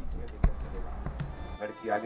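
A single sharp thump about half a second in, over faint voices and a low hum; the hum stops abruptly near the end.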